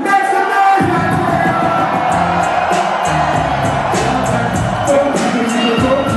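A hip-hop beat over a concert PA, its heavy bass dropping in suddenly about a second in under a steady drum pattern, with a crowd cheering and singing along.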